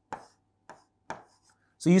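A pen tapping and clicking against a writing board as numbers are written: three short taps spaced about half a second apart.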